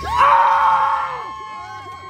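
A person's long, loud scream, held on one high pitch. It is roughest and loudest in the first second, then thins out and carries on.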